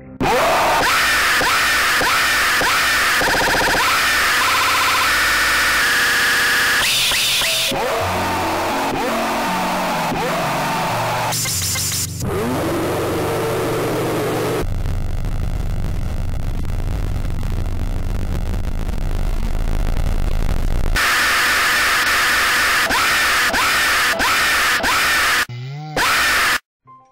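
Jump-scare screamer: a sudden, very loud blast of harsh, distorted noise and screaming. It cuts in abruptly, runs on with shifting pitch, dips briefly about twelve seconds in, and stops abruptly near the end.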